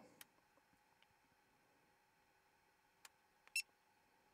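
Near silence with a few faint clicks and one short, high beep-like chirp about three and a half seconds in.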